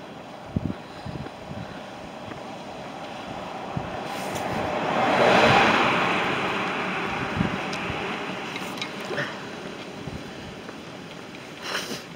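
A Land Rover Defender driving past. Its engine and tyre noise build to a peak about five seconds in, then fade over the next few seconds as it pulls away.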